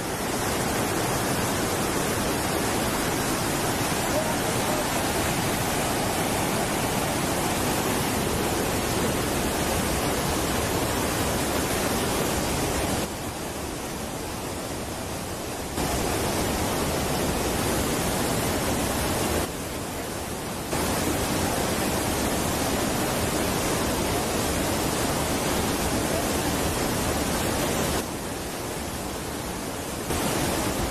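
Loud, steady rush of white water pouring through a channel below a dam. The level steps down a little three times, about halfway, a few seconds later, and near the end.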